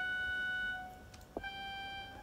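Yamaha WX5 electronic wind controller sounding through a synthesizer: two sustained notes, the first lasting about a second, the second starting about a second and a half in and slightly higher.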